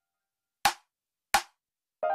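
Two sharp percussion hits, about two-thirds of a second apart, in a silent break of an electronic remix, each cutting off quickly.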